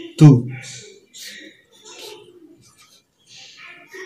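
A felt-tip marker's tip rubbing on paper in short, faint strokes as a handwritten letter is drawn.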